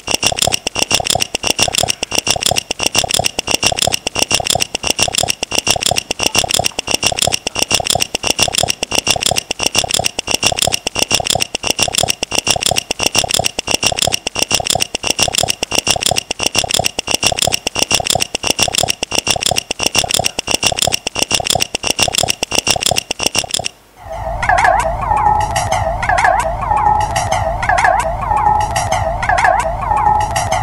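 The soundtrack of an animated art video: a fast, steady rattling clatter over a high steady whine, which cuts off suddenly near the end. It gives way to a wavering electronic buzz over a low hum.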